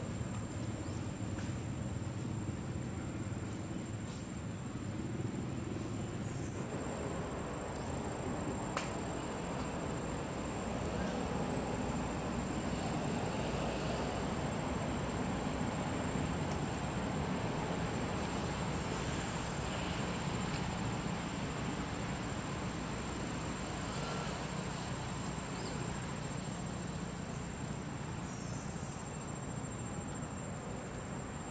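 Steady outdoor background noise, a low even rumble with a constant thin high-pitched tone over it; the rumble shifts a little over six seconds in.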